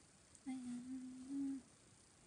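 A woman's closed-mouth hum: one held note lasting about a second, stepping slightly up in pitch near the end.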